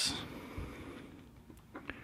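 Quiet pause with faint room tone, broken by a couple of faint, short clicks near the end.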